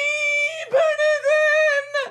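A voice singing a run of high, held notes, each dipping briefly in pitch before the next.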